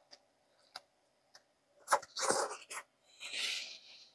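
A person eating a wrap: faint mouth clicks while chewing, then two breathy bursts in the second half, a sharp one about two seconds in and a softer hiss near the end, like forceful breaths through the nose.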